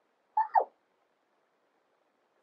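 A woman's single exclamation "oh!" about half a second in, falling steeply in pitch.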